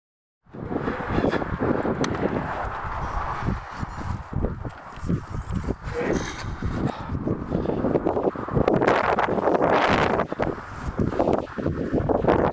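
Wind rumbling on the microphone together with handling noise and footsteps on a dirt riverbank, cutting in abruptly about half a second in and gusting louder around the ten-second mark.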